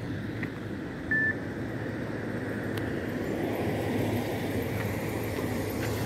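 Steady road and traffic noise, a rumble of vehicles moving on a road, swelling slightly midway. There is a brief high beep about a second in.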